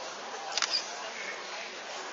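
Hall ambience with low audience murmur and one sharp click about half a second in.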